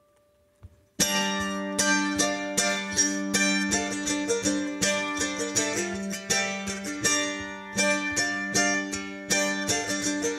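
Solo F-style mandolin. After about a second of near silence it comes in suddenly with brisk, accented picked notes over low strings left ringing, a fast bluegrass-style tune.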